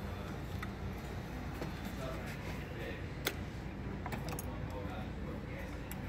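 Wiring connectors being handled in an engine bay: scattered light plastic clicks, with one sharper click about three seconds in, over a steady low hum.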